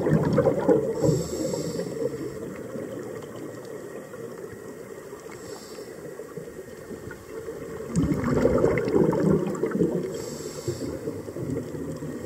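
Scuba diver breathing through a regulator, heard underwater: two long rumbling surges of exhaled bubbles, one at the start and one from about eight seconds in, with a short high hiss of inhalation three times, after each exhalation and once midway.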